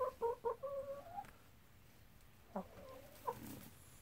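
Hen clucking: a quick run of short calls in the first second, one of them drawn out, then two more short calls later.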